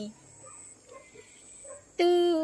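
The end of a woman's held note in unaccompanied Hmong sung poetry (lus txaj), then a quiet pause between phrases with a few faint, short calls in the background.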